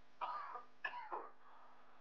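A man coughing twice, two short coughs a little over half a second apart, heard as part of a played-back interview recording.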